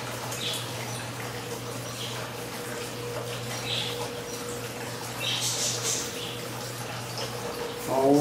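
A comb drawn through the curly hair of a hairpiece, about five soft, brief swishes, over a steady low hum and hiss.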